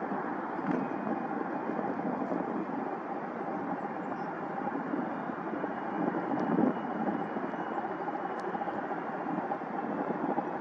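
McDonnell Douglas CF-18 Hornet's twin General Electric F404 turbofans running at taxi idle as the jet rolls along the taxiway: a steady rush of engine noise with a faint thin whine over it.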